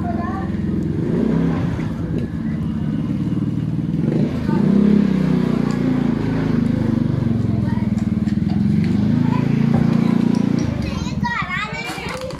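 A small vehicle engine, motorcycle-like, running steadily close by with small shifts in pitch, cutting off about eleven seconds in. Children's voices follow.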